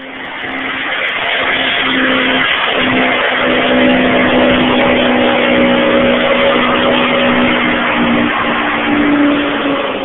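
Supercharged 474 cubic-inch Pontiac V8 of a 1968 GTO, with a 6-71 blower, held at high revs through a burnout while the rear tires spin and squeal on the pavement. The sound builds over the first couple of seconds, then holds a steady note, rising briefly near the end.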